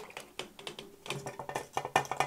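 Browned veal bones tipped from a bowl into a metal pot of cold water, knocking against the pot and each other in a run of small clicks and knocks.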